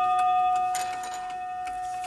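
The single chime rod of a Sessions Tambour mantel clock ringing on after one hammer strike, a clear metallic tone slowly fading, with a light click about three-quarters of a second in. The rod rings alone because the clock's second chime rod has been removed.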